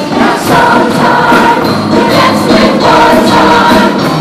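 Mixed-voice show choir singing together over a band accompaniment with a steady beat.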